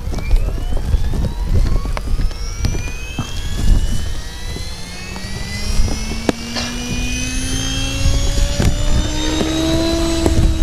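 Radio-controlled helicopter spooling up: a whine that climbs steadily in pitch as the rotor gains speed, joined about halfway by a deeper rotor hum that also rises.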